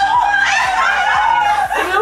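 Women laughing and exclaiming excitedly in high-pitched voices.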